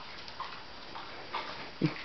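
Two faint, short vocal sounds from a pet animal, about a second apart, followed near the end by a woman's brief murmured 'mm'.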